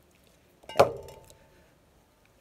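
An aerosol can set down with a single sharp clink about three-quarters of a second in, ringing briefly before it fades.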